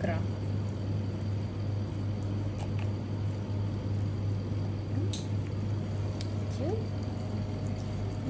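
Soft wet squelching of raw trout flesh and roe skein as gloved hands pull the skein out of the fish's belly, with a few faint clicks, over a steady low hum.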